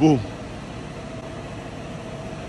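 Tractor diesel engine running steadily, a low even hum with a faint steady tone.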